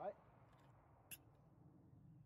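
Near silence, with one short faint click about a second in.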